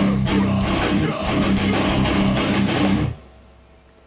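Distorted electric guitar, an Epiphone Les Paul Custom tuned to drop C through a Marshall Valvestate amp, playing the closing of a heavy metal song with the rest of the band behind it. The music stops suddenly about three seconds in, leaving a faint fading hum.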